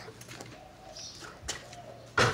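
Quiet outdoor air with a faint, low bird call in two short parts around the middle, and a single light tap about one and a half seconds in.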